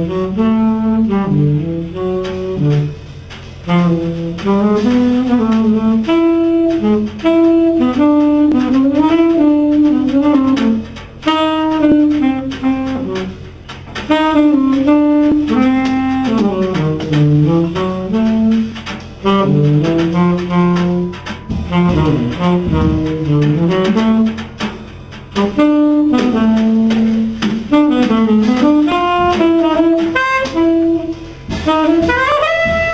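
Tenor saxophone playing a jazz solo line in runs of notes broken by short pauses, with the quartet's bass and drums quietly underneath.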